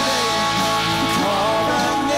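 Live worship band playing a rock-style song: drum kit, electric guitar and keyboard together, at a steady loud level.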